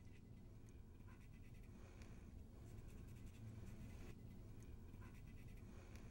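Very faint scratching and tapping of a silver leafing pen's felt tip dabbing on a silver-leafed lamp base, filling small gaps in the leaf.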